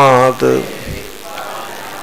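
A man's lecturing voice ends a word about half a second in. Then comes a pause filled with a steady background hiss, the noise of the recording itself.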